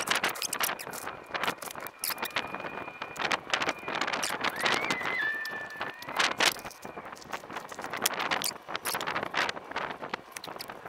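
Garden hoe's metal blade scraping and chopping through loose soil in quick, irregular strokes, drawing soil over freshly planted potatoes.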